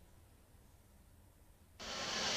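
Near silence: quiet ice-arena room tone, broken near the end by a sudden, loud, steady rush of noise.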